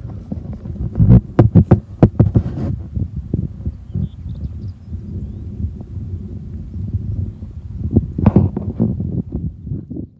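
Wind buffeting the microphone: a loud, uneven low rumble with strong gusts about a second in and again near eight seconds.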